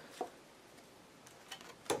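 A few light clicks and taps of playing cards being laid down on a felt-covered tabletop, the sharpest one near the end.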